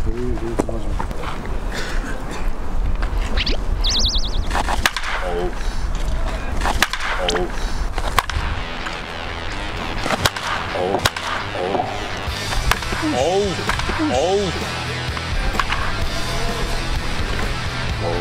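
Baseball bat hitting pitched balls in a batting cage: a string of sharp cracks spaced irregularly, roughly every second or two, over background music.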